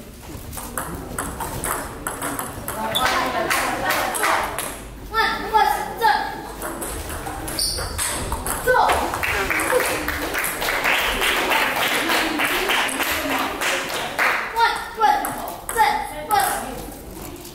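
Table tennis rally: the ball clicking repeatedly off the bats and the table, the hits coming thick and fast in the middle of the stretch.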